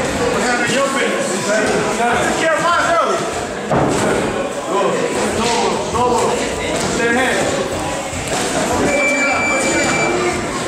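Boxing gloves landing punches on body and headgear during heavyweight sparring: a scatter of sharp thuds and slaps, heard over continuous background voices.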